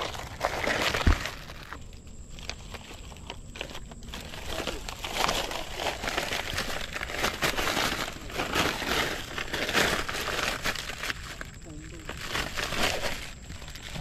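Plastic bag crinkling and rustling as it is handled, in irregular bursts, with one dull thump about a second in.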